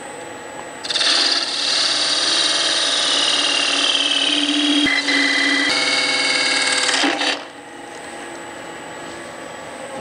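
Narrow parting tool cutting into a pale wood spindle spinning on a lathe, parting off a thin ring. The loud cutting noise, with a whistling edge, starts about a second in and stops suddenly around seven seconds, leaving the lathe running on its own.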